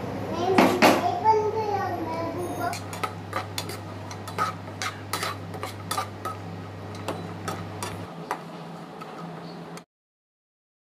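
Metal spoon clinking and scraping against a frying pan while cashews, almonds and coconut pieces are stirred in hot ghee, in irregular sharp taps about two a second. A voice is heard in the first couple of seconds, and a low steady hum runs underneath until near the end.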